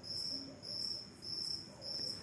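A cricket chirping faintly in repeated high trills.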